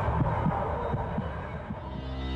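Closing seconds of a television intro theme: a low throbbing pulse, repeating a few times a second under a noisy wash, fading away.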